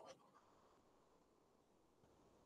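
Near silence: faint room tone, with one brief faint click right at the start.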